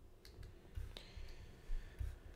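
A few faint, sharp clicks in the first second, the last one followed by a brief faint ring: a pen stylus tapping on a writing tablet.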